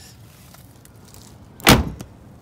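A car door being shut: one heavy thump about a second and a half in, the rear door of a 1990 Cadillac Sedan Deville closing.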